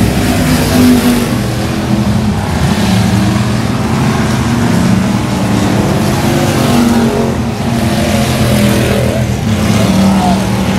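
Factory stock dirt-track race cars running hard around the oval, their engines loud and continuous, the note rising and falling as cars pass and accelerate.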